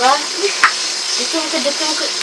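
Food frying with a steady hiss of sizzling oil, and a single click about two-thirds of a second in.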